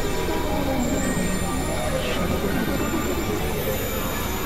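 Experimental noise and drone music from synthesizers (Novation Supernova II, Korg microKORG XL): a dense, noisy, steady texture. A low tone glides downward in the first second, and a thin high whistle rises about a second in.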